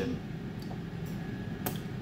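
Quiet room tone with a single short click about three-quarters of the way through, and a fainter tick before it.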